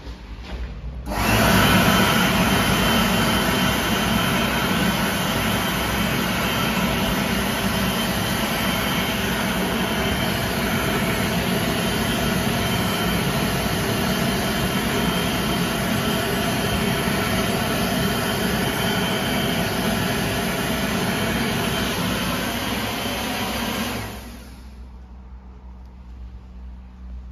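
2022 Supreme BA101 electric hand dryer starting about a second in and running steadily for over twenty seconds, then winding down and stopping near the end.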